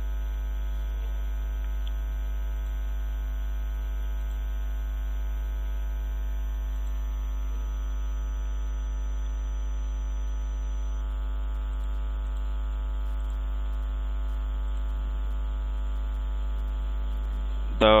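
Steady electrical mains hum with a buzzing stack of overtones, picked up by the recording chain and never changing in level.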